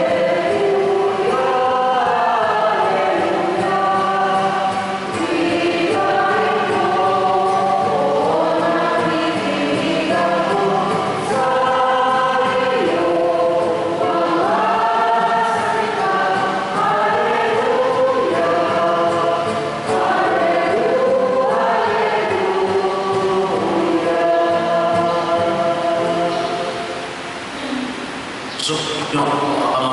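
Church choir singing a liturgical hymn in long, held phrases; the singing ends just before the end.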